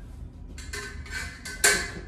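Rustling and swishing movement of a solo sword-and-buckler drill, as the fencer steps and brings sword and buckler up into guard, with one sharp knock about one and a half seconds in.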